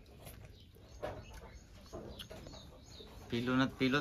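Faint bird calls over quiet surroundings, then near the end a voice calls out a name.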